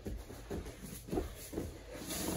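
Faint shuffling of two grapplers releasing a guillotine choke and shifting on foam floor mats, with a few short soft sounds.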